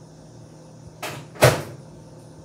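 Two quick knocks about a second in, the second louder and heavier: a door or cupboard in the kitchen being worked and shut.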